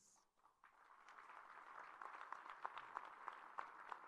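Crowd applauding faintly, starting about half a second in after a brief silence and going on as a steady patter of many hands clapping.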